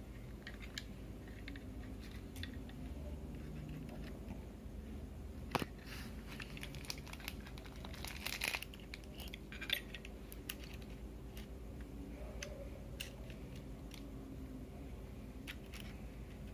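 Small clicks and taps of a steel jigsaw blade being handled and fitted into the blade clamp of a Black+Decker jigsaw that is not running, with light rustling. A sharper click comes about five and a half seconds in, and a cluster of clicks a couple of seconds later.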